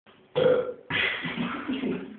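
A loud, burp-like vocal sound from a man: a short one, then a longer drawn-out one starting about a second in.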